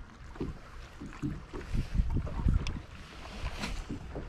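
Wind gusting on the microphone and water lapping against a fishing boat, heard as uneven low rumbles, with a few light clicks.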